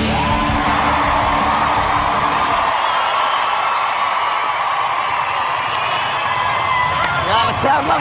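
Backing music with a woman singing. The music cuts out about two and a half seconds in while she holds a long high note over an audience cheering and whooping, and the whoops grow near the end.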